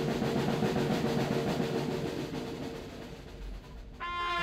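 A drum roll, with a steady held note underneath, fading toward the end.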